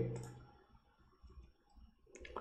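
Faint computer mouse clicks, about a second and a half in, in a quiet room.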